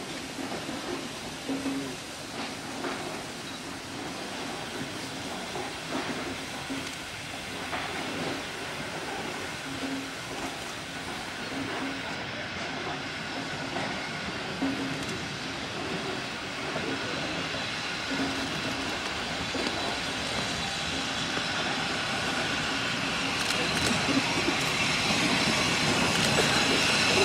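Austerity 0-6-0 saddle tank steam locomotive working a passenger train as it approaches, the sound of the engine and rolling coaches growing steadily louder, with a hiss that builds near the end.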